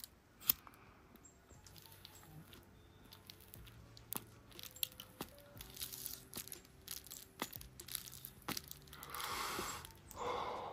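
A lighter clicks about half a second in, then faint crackling and small ticks as a large paper cone joint is puffed to get it lit. Near the end comes a long breath out of smoke.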